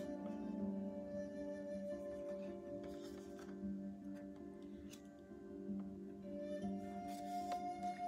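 Slow background music of long held tones, with a few light clicks of tarot cards being handled and flipped.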